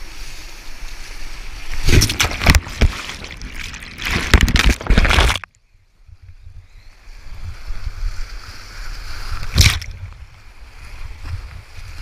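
Whitewater rushing and splashing over a kayak running a rapid. There are loud bursts of spray about two and four seconds in, a sudden brief cut-out a little after five seconds, and one more sharp splash near the end.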